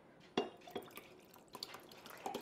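Sparkling water poured from a glass bottle into a glass jar of ice: a few short splashes and drips, the sharpest about half a second in.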